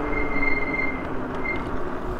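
Electric bike slowing down. The motor's whine falls gently in pitch over wind and tyre noise, while the brakes give a high, steady squeal for about a second and then briefly again.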